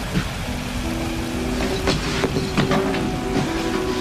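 Sustained notes of a dramatic background score come in about half a second in and build over a steady rain-like hiss, with a few sharp clicks and knocks through the middle.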